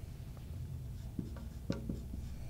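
Marker writing on a whiteboard: faint strokes and taps, a few of them clustered in the second half.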